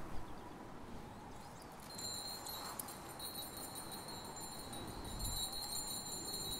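A cluster of small bells jingling in a steady high ring. It starts about two seconds in after a quieter stretch and briefly breaks off once before carrying on. These are altar bells rung at the elevation of the host.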